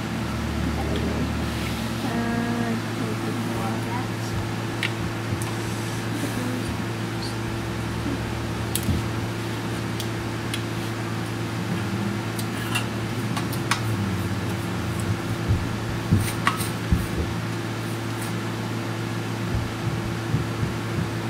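A steady low hum, with scattered light clicks and taps as small electronic parts and tools are handled on a workbench, the taps coming more often in the second half.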